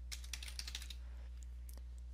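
Computer keyboard typing: a quick run of faint key clicks in the first second, then a couple more near the end.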